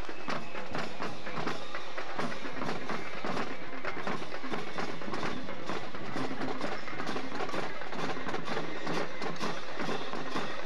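High school marching band drumline playing a marching cadence on snare and bass drums, with rim clicks, as the band marches.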